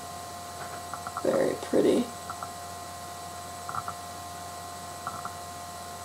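Steady electrical hum from the recording setup, with scattered faint clicks and two short murmured voice sounds about a second and a half in.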